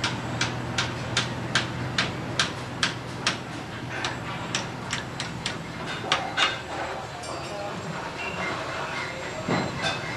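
Sharp, regular knocks, about two and a half a second, over a steady low hum; the knocking becomes sparser and uneven about halfway through.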